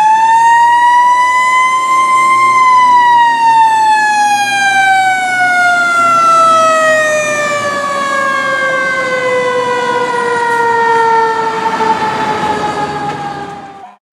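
A fire truck's mechanical siren, rising to its peak pitch early on and then coasting slowly down in a long falling wail. It cuts off suddenly at the end.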